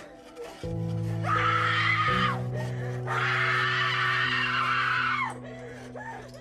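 A woman screaming twice in long drawn-out cries, the first about a second long and the second about two, each falling in pitch as it ends. Sustained low music chords play underneath.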